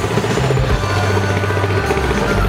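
Upbeat dance music with a fast, even pulse and a bass line that changes note every second or so.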